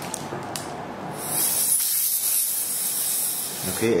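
A high-pitched hiss of rushing air through a dental tip held at the tooth's open access cavity. It starts about a second in and cuts off just before the end.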